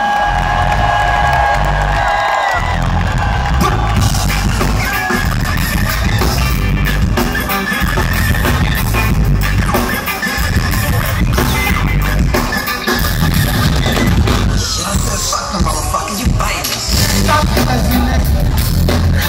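Live reggae-rock band playing a loud instrumental passage on electric guitar, bass and drums, heard from within the audience.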